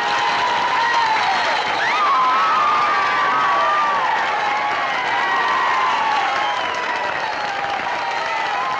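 Crowd of teenagers applauding and cheering steadily, with high, wavering held shouts riding over the clapping.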